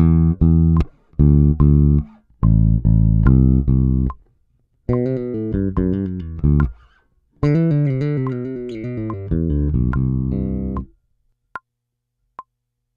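Four-string electric bass guitar playing a fast lick with hammer-ons and pull-offs, in four quick phrases with short pauses between them; the last phrase is the longest and stops about a second before the end. A short tick follows.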